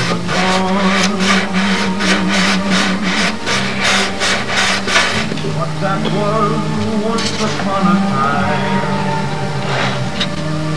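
Rhythmic hand-sanding strokes, about three a second, as a round tool handle is worked back and forth to shape a radiused fillet in balsa wood. The strokes stop about five seconds in, with a few more near seven seconds. Steady background music plays underneath.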